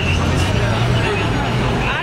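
Busy street sound: several people talking in a crowd over the steady low drone of an idling vehicle engine.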